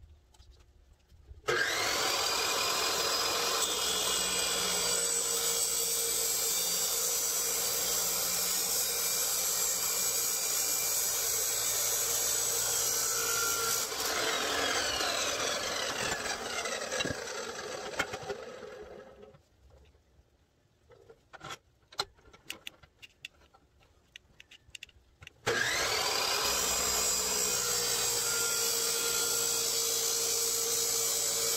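Ingco 355 mm abrasive cut-off saw switching on about a second and a half in, spinning up and running loud as its Lotus cut-off disc grinds through metal pipe; it is switched off and winds down with a falling whine until about the nineteen-second mark. After a few seconds of scattered knocks it starts again near the end and cuts, throwing sparks.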